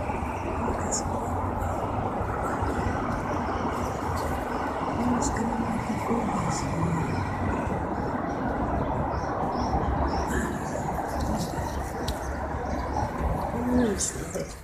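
Steady urban background noise: a continuous rumble and hiss with a few faint clicks now and then.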